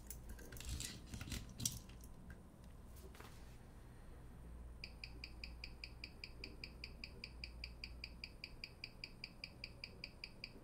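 Faint handling clicks as a watch is clamped into a timegrapher's microphone stand, then, from about five seconds in, the steady ticking of an ETA 2472 mechanical watch movement picked up by the timegrapher. The ticks come about five times a second, the movement's 18,000 beats per hour, and this one is running properly.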